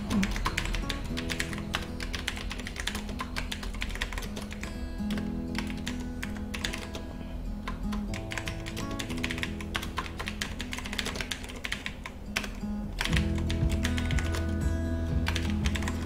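Typing on a computer keyboard, a quick irregular run of key clicks, over background music that gets louder about thirteen seconds in.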